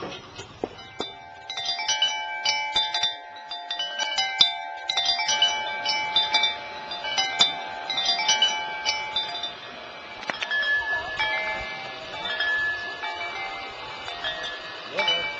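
Small metal chimes ringing in irregular clusters of strikes, many clear overlapping tones left to ring on, thinning out after about ten seconds.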